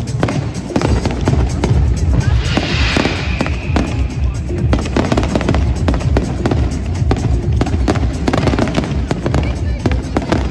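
Aerial firework shells bursting in rapid succession, a dense run of bangs, with a brief hissing crackle a few seconds in. Music and people's voices sound underneath.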